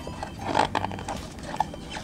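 Paper pages of a large art book being turned by hand: irregular rustling and flapping, loudest about half a second in.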